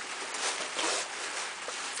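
Paper rustling and crinkling: a paper mailing bag and wrapping paper being pulled about during gift unwrapping, as an irregular crackle.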